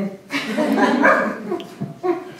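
Group laughter: many people laughing at once, with the speaker laughing along. It is a burst that dies away by about a second and a half in.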